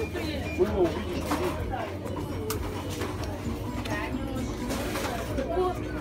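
Shop ambience: a steady low hum under quiet, indistinct voices talking.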